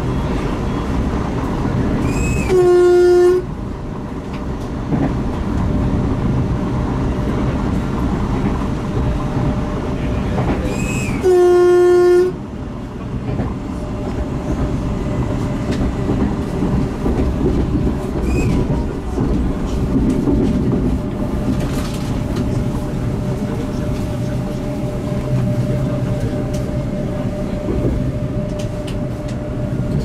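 A train horn sounds twice, each blast a steady tone under a second long, about nine seconds apart. Under it runs the steady rumble of an electric commuter train heard from inside the carriage while it is moving.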